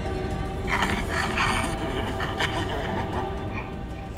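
Eerie horror-film score of sustained droning tones. In the first half it carries rough, breathy vocal sounds from a made-up creature.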